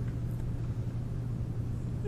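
Room tone: a steady low hum with a low rumble beneath it.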